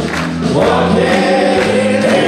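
Several singers singing together as a group over a live band with drums and keyboard.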